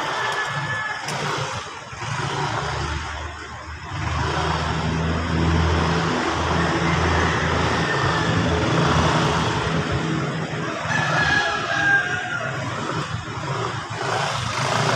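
Motor scooter engine running at low, steady speed as the scooter weaves slowly through a cone course, getting louder as it passes close by around the middle.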